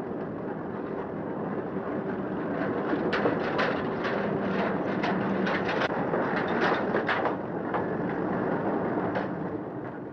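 A fishing boat tying up at a wharf: a steady low engine hum under a noisy bed. From about three to seven and a half seconds in, a quick run of knocks and clatters comes from the lines and gear being handled.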